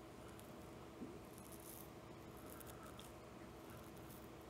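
Near silence: faint room tone with a low steady hum and one faint click about a second in.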